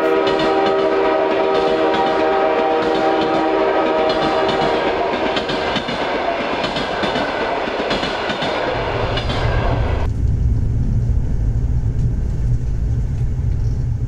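Electric passenger train's horn sounding one steady chord for about five seconds over the running noise of the approaching train. From about nine seconds a low, steady rumble like that heard inside a moving carriage takes over, and the higher noise cuts off.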